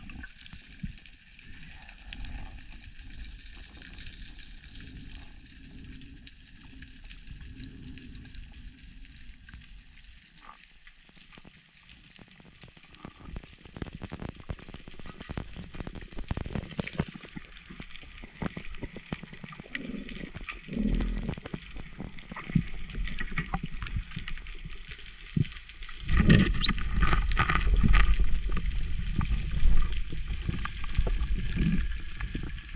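Underwater sound through a diver's camera housing: a steady water hiss with scattered clicks and crackles that thicken about halfway through, then loud low rumbling and knocking in the last few seconds.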